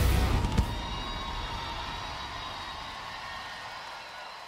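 A live band's closing chord: the last drum and guitar hits land in the first half second or so, then the held notes ring on and fade away steadily.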